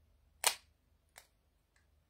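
Magnetic lipstick lid snapping onto the tube: a sharp click about half a second in, then a fainter click just over a second in.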